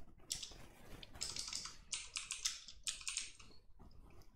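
Computer keyboard typing: faint, irregular runs of key clicks, a few keystrokes at a time with short pauses between.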